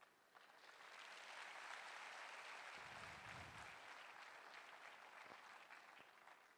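Faint audience applause that builds about a second in and tapers off near the end.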